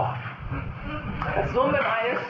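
Speech: a person talking, with a brief pause near the start.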